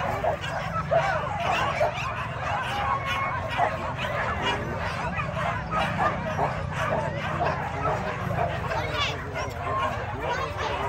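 Several dogs barking and yipping excitedly, many short overlapping calls, over the chatter of a crowd.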